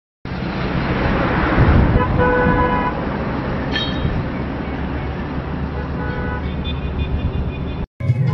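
Road traffic noise with a vehicle horn honking for about a second, followed by shorter horn toots later on; the sound cuts off suddenly at the end.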